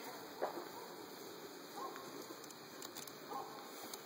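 Faint buzzing of a honeybee colony at an opened hive, with a few soft handling sounds as the hive box is moved.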